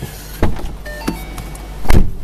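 Two handling knocks inside a car cabin, a sharp one about half a second in and a louder one near the end, over the low steady idle of a 2010 Mustang GT's V8.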